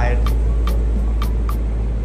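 Background music with a steady beat, ticking about two and a half times a second, over a steady deep rumble.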